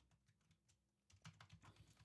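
Faint computer-keyboard typing: scattered key clicks, with a quick run of keystrokes in the second half.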